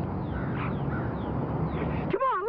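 Birds calling, short falling chirps and a brief call, over a steady outdoor background noise.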